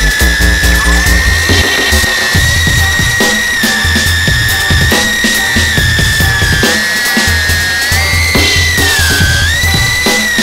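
Tiny whoop FPV drone's motors and propellers whining steadily, the pitch dipping and rising with the throttle, most clearly near the end.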